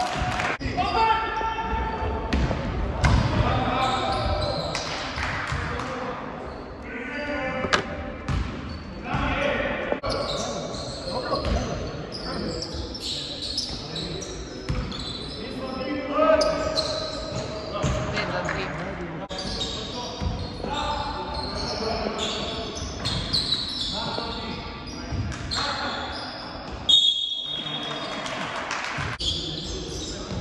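Basketball game in a large gym: a basketball bouncing and slapping on the hardwood court, with players calling out to each other, all echoing in the hall.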